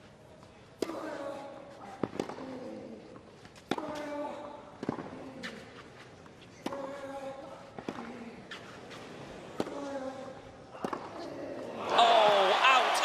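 Tennis rally on a clay court: racket strikes on the ball about every one and a half seconds, the two players alternating. Every other strike is followed by a loud falling grunt from the hitter.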